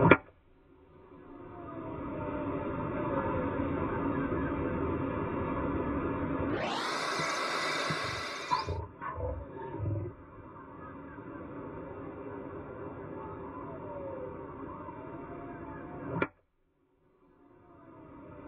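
Golf iron striking the ball off a tee: a sharp crack just after the start, with another near the end. In between is steady broadcast background, broken by a couple of seconds of hiss and a few knocks midway.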